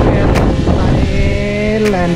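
Small quadcopter drone hovering low, its propellers giving a steady multi-tone whine that comes through clearly from about a second in. Heavy wind buffeting on the microphone runs underneath.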